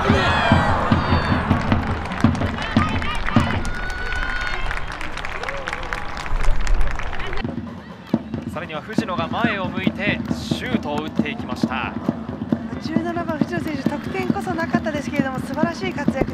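Soccer match sound with voices shouting on the pitch and in the stands, over background music. About halfway through, the sound cuts abruptly to a different stretch of match audio.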